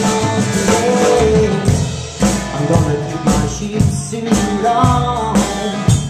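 Live rockabilly band playing a swinging blues-rock number: upright bass and drum kit keeping a driving beat, with a man's voice singing over it in places.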